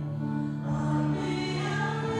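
Slow music with a group of voices singing long held notes, moving to a new chord partway through.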